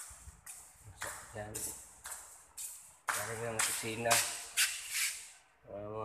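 A man's voice talking close to the microphone, in short phrases with pauses.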